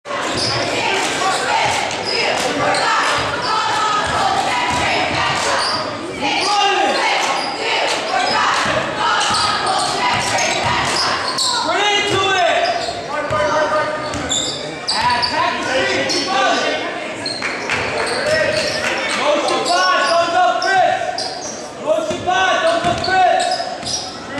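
Basketball dribbled on a hardwood gym floor, with short repeated bounces, under the voices of players and the crowd carrying in a large gym.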